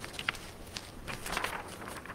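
Soft, irregular footsteps of a person walking, with a few light knocks.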